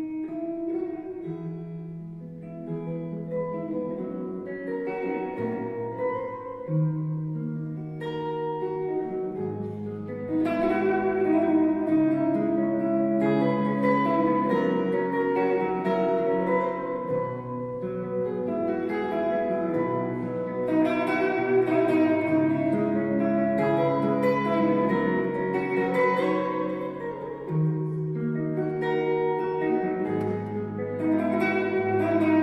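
Solo acoustic guitar played fingerstyle, an instrumental arrangement of a worship song: a picked melody over bass notes. It starts sparse and becomes fuller and louder about ten seconds in.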